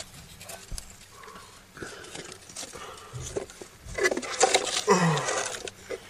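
Cardboard pieces of a homemade toy drum set knocking and rustling as they are lifted into a wooden box, a few light knocks, then a short voice-like sound about four seconds in.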